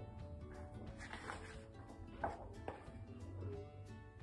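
Soft background music playing, with a picture-book page being turned: a few brief paper rustles and taps, the clearest a little past halfway.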